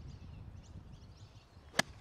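A golf club striking a golf ball on a tee shot: one sharp crack near the end, after a quiet stretch of faint outdoor background.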